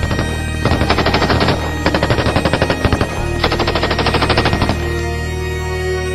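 Three bursts of rapid machine-gun fire, each about a second long, over sustained background music.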